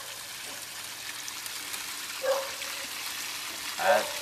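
Water spraying from a PVC spray bar and running steadily down a small homemade gold sluice box while the concentrates are hand-rinsed to get the heavies off.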